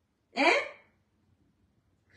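A woman's single short questioning interjection, 'Hein?', rising in pitch and lasting about half a second.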